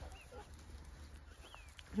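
Faint outdoor ambience: a steady low wind rumble with two brief high bird chirps, one about a quarter second in and one about a second and a half in.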